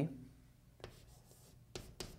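Chalk on a chalkboard as a numeral is begun: a couple of short, sharp chalk strokes, the clearer one near the end.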